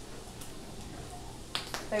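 Butter sizzling in a nonstick frying pan around two tuna patties, as a silicone spatula slides under a patty to lift it. Two sharp clicks come about a second and a half in, just before a woman starts speaking.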